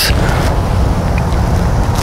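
Steady low rumbling background noise with no strikes or clicks in it.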